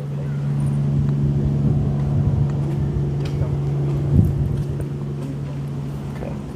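A steady low mechanical hum, like an engine running nearby, with a brief thump about four seconds in.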